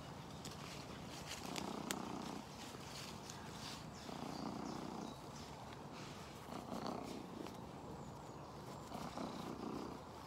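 Tabby-and-white cat purring close to the microphone while being stroked, the purr swelling and easing in slow waves about every two and a half seconds, with a few small rustles.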